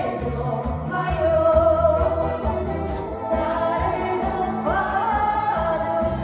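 A woman singing a Korean song into a microphone over a backing track with a steady bass beat, holding long notes.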